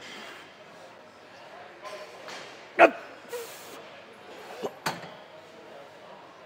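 Weight stack of a gym cable machine knocking during a set: one loud sharp clank about three seconds in and two lighter knocks a little before five seconds, over gym background noise.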